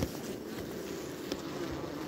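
Honeybees buzzing steadily in an opened hive, a low even hum over the exposed frames, with a light click right at the start.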